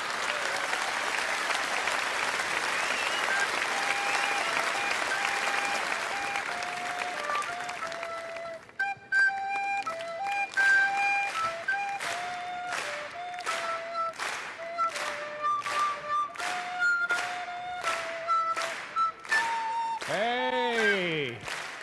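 Audience applause, with a recorder melody of single held notes coming through it. About nine seconds in, the applause turns into rhythmic clapping along in time, about two claps a second, while the recorder keeps playing the tune.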